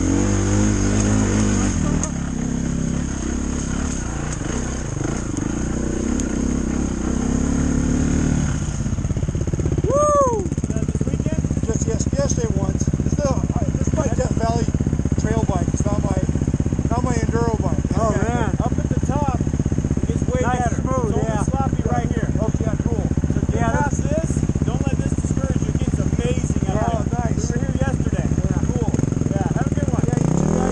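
Dirt bike engines: one running under throttle with changing pitch for the first several seconds, then settling to a steady idle about nine seconds in once the bikes are stopped.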